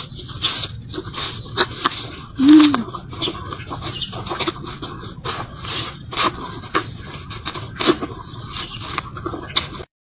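Mouth noises of someone chewing with her mouth crammed full of apple: an irregular run of wet clicks and crunches. A short hummed grunt sounds about two and a half seconds in.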